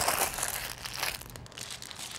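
A wrapping being crumpled and crushed in the hands, a dense crinkling crackle that is loudest at first and thins out over about two seconds.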